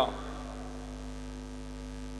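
Steady electrical mains hum with faint hiss from the microphone and sound system: a few low, unchanging tones with no other sound over them.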